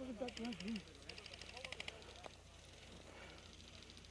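Distant airsoft rifles firing on full auto, heard as several short bursts of rapid ticking.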